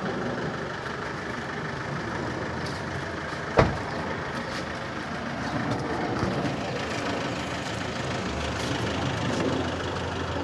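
Steady outdoor background of a vehicle engine running with street noise. About three and a half seconds in there is a single sharp slam, a car door being shut.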